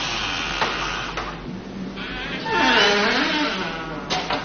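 Heavy wooden double doors being pushed open: a long scraping rush, with a wavering hinge creak in the second half.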